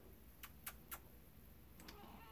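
Near silence: faint room tone with three quick faint clicks about half a second in, and one more near the end.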